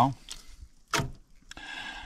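A single knock of a fillet knife on a plastic cutting board about a second in, then a soft, even scraping as the knife trims red meat from a carp fillet.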